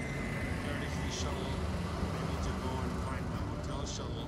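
Steady traffic rumble of cars and shuttle buses running along an airport curb, with faint voices of people nearby and a few short hisses about a second in and near the end.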